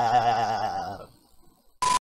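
A comic sound effect with a wobbling, warbling pitch fades out over about the first second. After a short near-silent gap, a burst of TV static with a steady beep cuts in near the end and stops abruptly.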